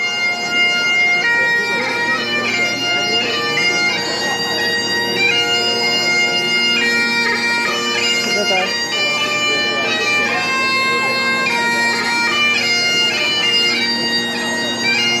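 Great Highland bagpipes playing a tune: a steady drone sounds beneath the chanter's melody, which steps from one held note to the next.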